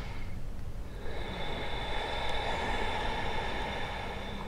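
A person's slow, deep breath, a long breath out with a faint whistle in it, over room noise.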